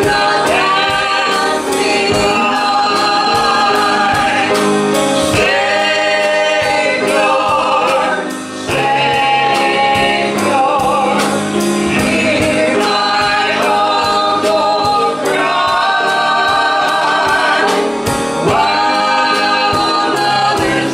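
Live gospel worship song: singers on microphones over a band, with a drum kit keeping a steady beat.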